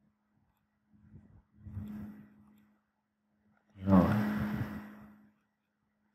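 A man's wordless vocal sounds, close to the microphone: a quiet murmur about two seconds in, then a louder drawn-out 'um' about four seconds in that fades away, over a faint steady electrical hum.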